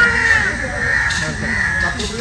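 Bird calls, repeated and held at a steady pitch, over people's voices in the background.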